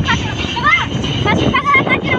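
Voices talking over the steady road and engine noise of a moving car, heard from inside the cabin.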